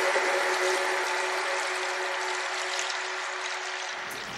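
Fading tail of an intro jingle: a single held synth tone under a shimmering hiss, slowly dying away.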